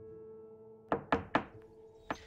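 Three quick knocks on a door in the second half, over a steady low drone.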